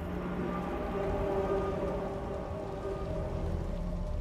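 Dramatic film score swelling in: sustained chords that build about a second in and hold, over a low rumble and a rain-like hiss.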